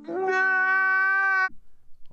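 A man's voice wailing one long held note, cutting off abruptly after about a second and a half.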